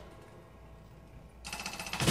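Robotic kinetic percussion instrument: a struck note's fading tail and a quiet pause, then, about one and a half seconds in, a rapid clattering roll of machine-driven strikes that grows louder.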